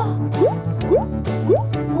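Children's background music with a row of cartoon pop sound effects, short upward-sliding bloops about twice a second, as pictures pop onto the screen.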